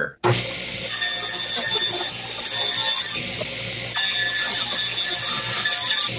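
Ridgid table saw running and making a bevel cut, set at about 23½ degrees, through a thin strip of plywood. It gives a steady high whine with cutting noise, which changes texture a couple of times and cuts off suddenly near the end.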